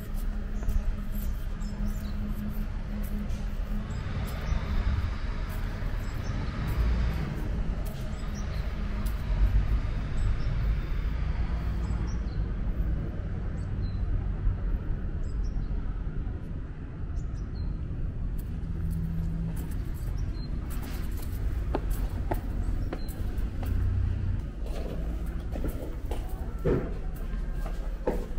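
Outdoor ambience: a steady low rumble, typical of distant traffic, with faint short chirps and scattered light clicks.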